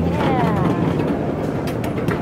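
Steady rumble of a passenger train car riding the rails, heard from inside the car, with a brief falling tone about a quarter second in and voices in the background.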